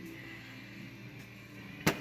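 Quiet room tone with a faint steady hum, then a sharp knock just before the end from the phone being handled.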